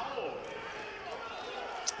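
Court sound from a sparsely filled basketball arena: a basketball bouncing on the hardwood floor and faint voices of players on the court, with one sharp tap near the end.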